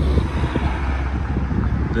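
Wind buffeting the microphone: a steady, fairly loud low rumble with irregular crackle.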